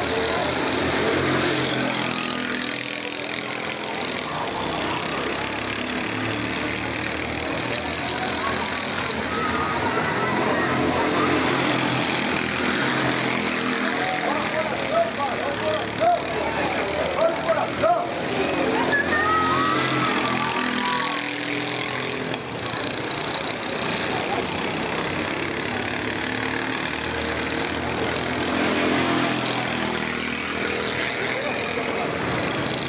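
Racing kart engines running and revving as karts pass through the corners, with people's voices rising over them in the middle.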